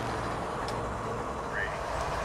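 BNSF diesel freight locomotives running, a steady low rumble with an even hum underneath.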